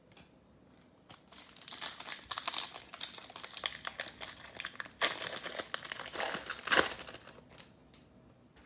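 Foil trading-card pack being torn open and crinkled by hand. A dense crackle of foil starts about a second in, with sharper, louder rips past the middle and near the end.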